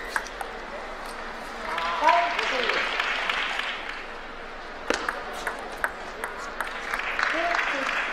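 Table tennis ball clicking off paddle and table in the last shots of a rally. Then applause with a few spectator shouts for the point, then a few more single ball clicks, and a second round of clapping and voices near the end.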